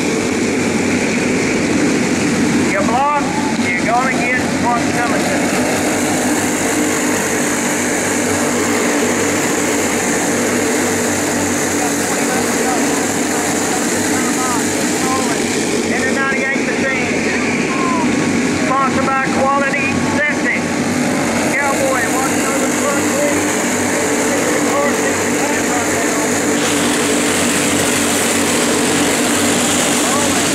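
A pack of racing go-kart engines running together at speed, a steady engine drone.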